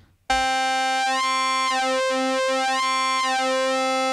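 Moog Muse synthesizer holding one steady note with oscillator sync on, starting about a third of a second in. Oscillator 2's frequency is swept by hand, so the upper harmonics shift and the tone changes colour while the pitch stays the same.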